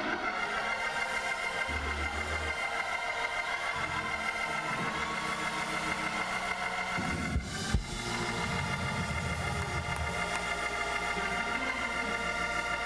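Church organ holding sustained chords under shifting bass notes, with two brief thumps a little past the middle.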